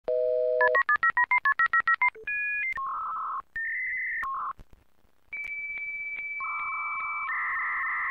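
Dial-up modem connecting. A short two-note phone tone leads into a fast run of about a dozen touch-tone dialing beeps. Then come shrill handshake tones, a short pause, a long steady high tone broken by regular clicks, and scratchy data-carrier tones.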